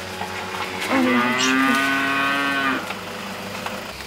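A cow mooing once: a single long, steady call lasting nearly two seconds, starting about a second in.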